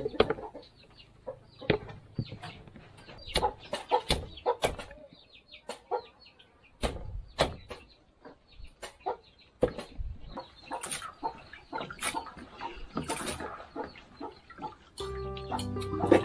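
Heavy knife chopping trevesia palmata stalks on a wooden block: irregular sharp knocks, sometimes several close together. Background music comes in near the end.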